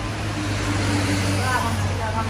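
A steady low machine hum with a broad noisy hiss over it that swells slightly after the start, and faint voices in the background.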